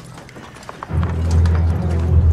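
A few light, sharp knocks and clatters during the first second, then a low sustained music drone swells in about a second in.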